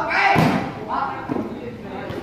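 A volleyball struck hard by a hand in a spike: one loud slap about a third of a second in, with voices around it.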